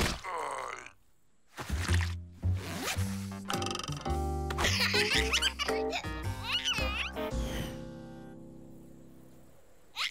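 Cartoon music score with slapstick sound effects. It opens with a sudden hit and a falling swoop, goes quiet briefly, then brings rhythmic music with sharp stabs and high, squeaky gliding sounds, and ends on a long held chord that fades away.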